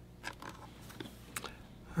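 Faint handling noise: a few soft clicks and rustles as a hand-held electroacupuncture unit's case is turned over in the hands, over quiet room tone.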